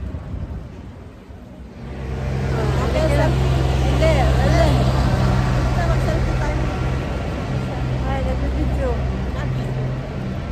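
A vehicle engine runs close by, a steady low hum that sets in about two seconds in, over street noise with voices.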